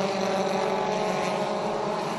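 Four-cylinder ministock race car engines running at speed as the field circulates, a steady, even-pitched drone.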